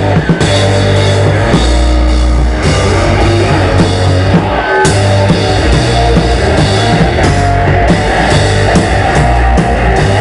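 Live punk rock band playing loudly: drum kit, electric lead guitar and bass guitar together.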